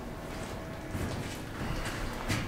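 Elevator machine-room equipment humming steadily, with a faint steady tone that stops about halfway through and a click at about the same moment.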